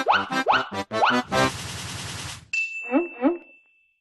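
Intro jingle sound effects: springy rising "boing" sweeps over a quick run of hits, then a short hiss-like burst, then a thin high tone with two brief rising chirps that fade away.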